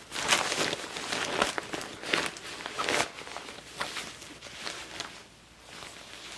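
Clear plastic packaging crinkling and rustling as a plush fabric lunch bag is pulled out of it and handled. The crackle is busiest in the first three seconds, then grows fainter and sparser.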